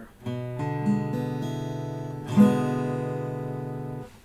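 Jasmine steel-string acoustic guitar sounding an E7 chord. The strings are picked one after another for about two seconds, then the whole chord is strummed once, louder, and left ringing as it slowly fades.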